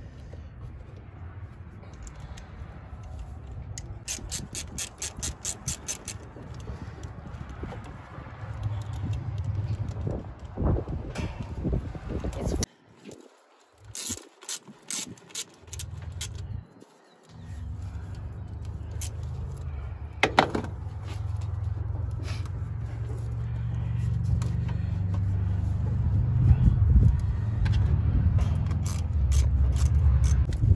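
A quarter-inch-drive ratchet with an 8 mm socket clicking in short runs, about five clicks a second, as it loosens the hose clamps on a metal cold air intake pipe. Under it runs a low, steady rumble that cuts out briefly twice.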